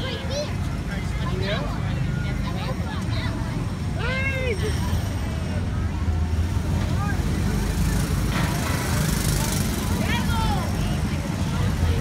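A steady low rumble runs throughout, with scattered distant voices and calls over it, one clear rising-and-falling call about four seconds in.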